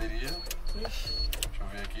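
Low, indistinct speech inside a car cabin over a steady low hum, with a few short high-pitched beeps in the first second.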